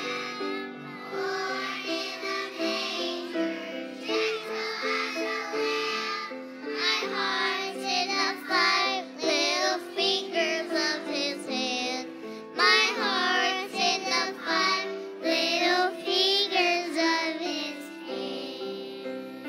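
A preschool children's choir singing a song together over instrumental accompaniment.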